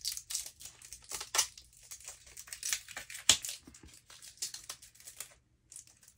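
Toy packaging crinkling and crackling as small action-figure accessories are pried out of it: irregular sharp crackles, the loudest a little past three seconds in, thinning out near the end.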